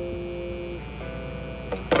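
Electric guitar chord ringing out and fading, a new chord sounding about a second in, and a sharp strum just before the end.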